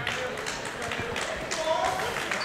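Gym ambience: faint voices of players and spectators echoing in a large hall, with scattered light knocks and taps.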